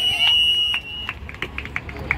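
Referee's whistle blown in one long, steady blast that stops about a second in, signalling the end of the tug-of-war pull.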